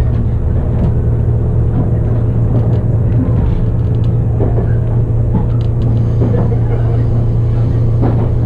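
Cabin noise of the Resort Shirakami train (Aoike set) running along the line: a steady, loud low drone with a constant hum from the railcar's running gear and engine.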